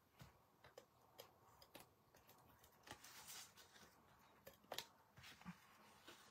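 Faint clicks and a short soft rasp of a tape runner laying strips of adhesive on cardstock, with light paper handling.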